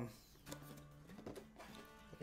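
Faint background music: a low sustained note that steps up to a higher one about a second in and holds, with light ticks and rustles of a cardboard box being handled.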